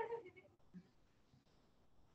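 The drawn-out end of a spoken word fading away in the first moment, then near silence: room tone.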